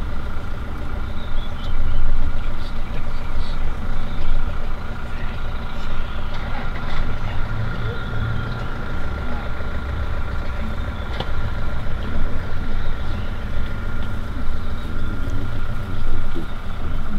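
Safari game-drive vehicle's engine running steadily at low revs, a continuous low rumble, with a thin steady high tone over it.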